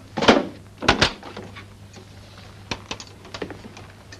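An interior door being opened: a thunk, then two sharp latch clicks about a second in, followed by a few fainter clicks, over a steady low hum.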